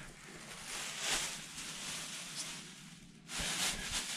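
Quiet cabin room tone with soft rustling, then a thin plastic shopping bag crinkling and rustling as it is handled, louder from about three seconds in.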